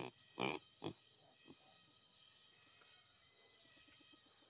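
A black pig grunting two short times within the first second, then near silence.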